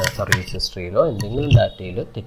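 A man's voice talking, with two sharp clicks near the start, about a third of a second apart.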